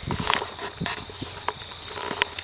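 Scattered soft clicks and knocks over low background noise, with a faint steady high-pitched tone.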